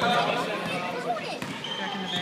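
Basketball bouncing on a hardwood gym floor during play, with spectators' voices chattering in the hall.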